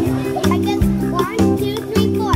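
Background music with a steady beat, with a toddler's high voice making several short rising and falling sounds over it, without clear words.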